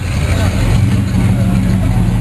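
1967 Pontiac GTO's 400 HO V8 (360 hp) rumbling steadily at low engine speed as the car rolls slowly forward.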